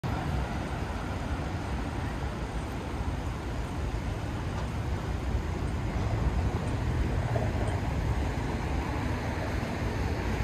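City street ambience: a steady low rumble of road traffic.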